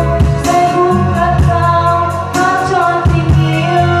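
A woman singing a slow, held melody into a handheld microphone over backing music with bass and a low drum beat.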